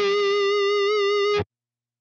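A held electric guitar note sustaining as octave-up feedback generated by the Blue Cat Audio AcouFiend plugin, its pitch wavering slightly. The note cuts off abruptly about one and a half seconds in.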